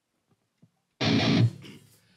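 A single loud, distorted electric guitar chord struck about a second in, held for about half a second and then cut short, ringing off faintly, after a moment of near silence with a few faint clicks.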